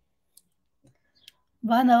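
Near silence with a few faint, short clicks, then a woman starts speaking near the end.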